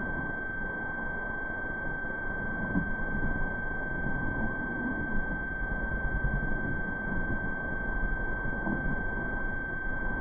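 A steady high-pitched electronic tone, with a fainter higher tone above it, over an even low rumbling hiss. It is the kind of tone and noise left on an old videotape's sound track, and no sledding sound stands out.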